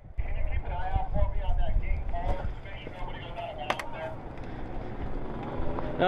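Wind rumbling on the microphone, with distant voices over it and a sharp click a little after halfway.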